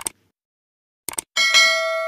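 Subscribe-animation sound effects: a quick double click at the start and another about a second in, then a notification-bell ding about a second and a half in that rings on and fades.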